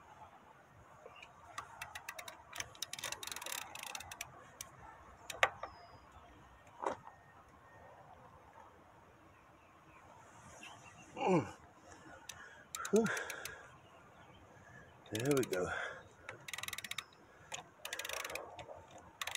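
A lug wrench working stiff lug nuts on a truck wheel: scattered sharp metallic clicks and taps as the wrench is seated and pulled. Short strained vocal grunts from the effort come about halfway through and again near the end, and these are the loudest sounds.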